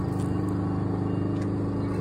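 An engine idling: a steady, unchanging low drone.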